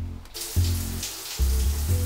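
A shower's water spray running as a steady rush that starts suddenly about a third of a second in. It plays over background music with deep, sustained bass notes.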